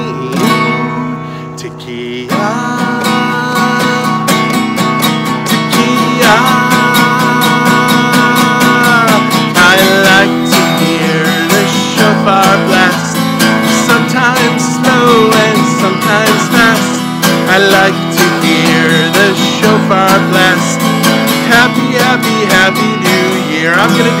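Acoustic guitar strummed steadily while a man sings along, holding one long note about six to nine seconds in.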